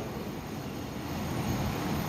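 Steady rushing noise of fast-flowing floodwater and heavy rain, with no distinct events, growing a little louder toward the end.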